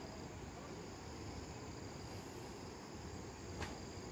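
Steady high-pitched insect chorus over a low rumble, with one sharp click about three and a half seconds in.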